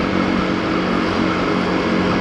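Motorcycle engine running at a steady speed with a constant low hum, under a steady rush of wind and road noise on the onboard microphone.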